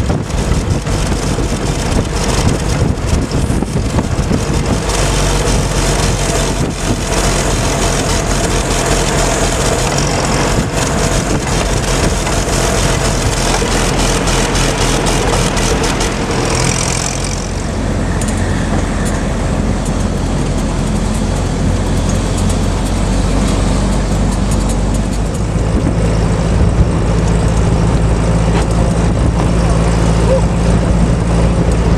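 Engine of an open 1944–45 military vehicle running steadily on the road, with wind rushing on the microphone. About halfway through, the rushing fades and a deeper, steady engine hum takes over.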